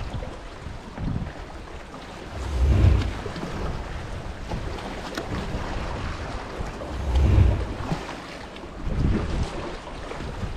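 Wind rumbling on the microphone in gusts, loudest twice, over a steady wash of seawater on rocks.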